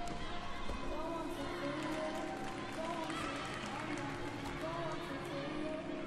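Echoing background of a large gymnastics arena: distant voices and music from elsewhere in the hall, with a sharp knock at the start and a fainter one shortly after.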